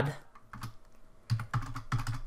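Computer keyboard keystrokes: a few separate key clicks spread over two seconds as a formula is typed.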